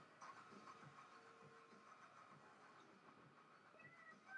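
Near silence: faint room tone and microphone hiss.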